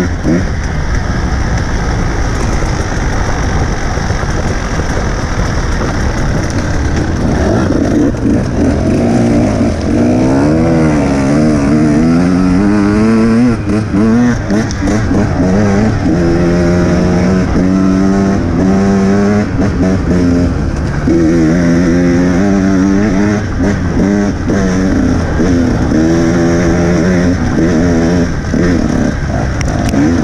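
Dirt bike engine ridden along a trail, revving up and down as the rider works the throttle and gears, its pitch rising and falling again and again.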